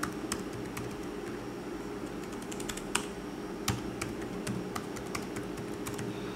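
Typing on the Asus VivoBook X202E laptop's keyboard: a string of light key clicks at an uneven pace, with a couple of louder strokes near the middle.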